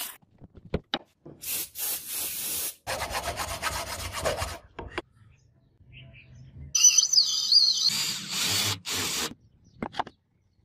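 Hand filing on a metal sword crossguard in several short passes with pauses between them, one passage made of quick even strokes. Near the end, a louder stretch carries a wavering high squeal.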